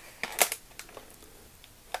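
Plastic blister packaging crackling and clicking in gloved hands as it is turned over, a few sharp clicks in the first half-second, then faint ticks.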